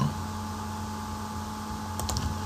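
Steady low electrical hum with faint hiss, the recording's background noise, with no distinct sounds over it.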